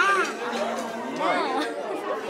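Chattering voices, with a high voice rising and falling in pitch near the start and again a little after a second in.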